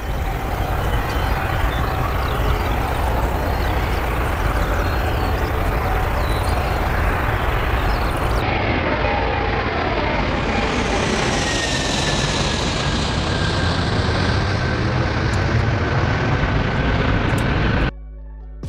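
Antonov An-225 Mriya's six turbofan engines at takeoff power: a loud, steady jet roar as the aircraft lifts off and climbs. After a cut partway through, a high engine whine falls slowly in pitch as it passes overhead, and the sound cuts off suddenly at the end.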